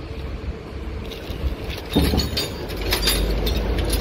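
Clear plastic bag wrapped round a small gasoline engine crinkling in short crackles as a hand grips and handles it, over a steady low rumble.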